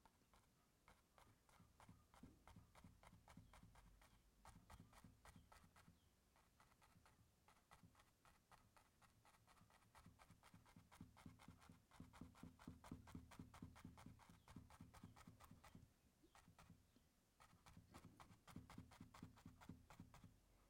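Near silence with faint, quick taps and scrapes of a small brush dabbing oil paint onto canvas, coming in spells.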